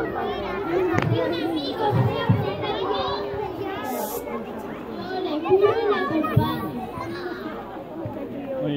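Many young children's voices talking and calling out at once, overlapping into a busy babble.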